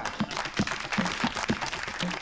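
Audience applauding, a dense patter of claps, with the low thumps of the show's drum beat carrying on underneath at about two or three a second.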